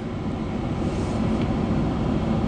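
Steady hum and rushing noise inside a stationary vehicle's cab: the idling engine and the air-conditioning blower.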